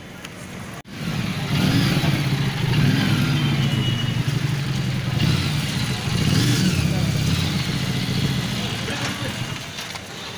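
Motorcycle engine running close by, starting suddenly about a second in and staying loud and fairly steady, with people's voices over it.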